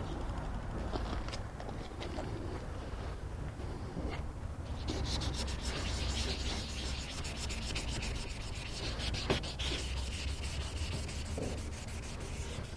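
600-grit sandpaper wet-sanding a plastic car headlight lens by hand in quick back-and-forth strokes, a steady scratchy rubbing that grows louder and denser from about five seconds in. It is the sanding stage that takes the yellow oxidation and small scratches off the lens.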